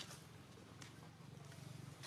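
Near silence: a faint, steady low hum with a few soft ticks.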